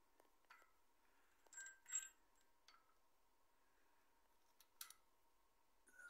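A few faint metallic clinks and light rattles of a steel timing chain being handled onto a crankshaft sprocket, the loudest about two seconds in, against near silence.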